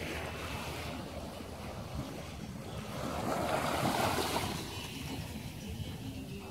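Small waves washing onto a calm sandy beach, with wind rumbling on the microphone. The wash swells louder about three seconds in and fades a second or so later.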